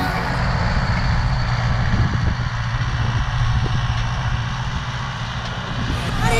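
Zetor Forterra 115 tractor's four-cylinder diesel engine running steadily under load as it pulls a disc harrow past, easing slightly near the end as it moves away.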